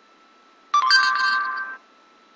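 Short electronic chime from the Google voice search app on an iPod touch. It sounds about three-quarters of a second in, holds a few steady tones for about a second, then cuts off. It marks the app finishing listening to the spoken query and starting the search.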